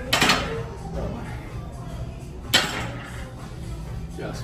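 Two metallic clanks of gym weights: a rattling clank just after the start and a single sharp one about two and a half seconds later, over background music.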